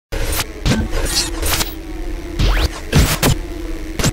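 Intro sound effects for an animated logo: a string of sharp hits and glitchy stutters over a steady low hum, with a fast rising sweep about two and a half seconds in.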